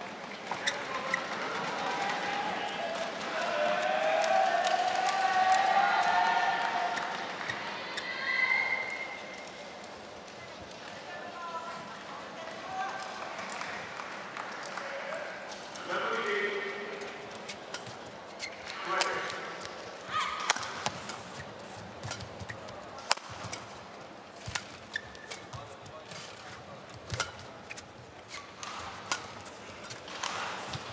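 Arena crowd cheering and shouting, loudest a few seconds in, then dying down. From about halfway through, a badminton rally: sharp cracks of rackets hitting the shuttlecock, and shoes squeaking on the court.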